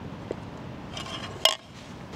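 A non-stick aluminium frying pan with a spatula lying in it being handled: a few light clinks of cookware, the sharpest about one and a half seconds in.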